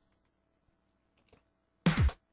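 Near silence with a couple of faint clicks, then near the end the drum track plays again. A programmed kick drum, its low thud falling in pitch, sounds together with a bright, noisy clap.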